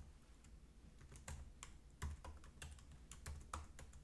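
Faint typing on a computer keyboard: about a dozen keystrokes at an uneven pace.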